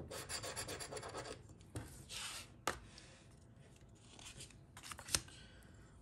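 A metal coin scraping the coating off a paper scratch-off lottery ticket in quick strokes, with paper rubbing on a wooden tabletop. Two sharp clicks stand out, the louder one near the end.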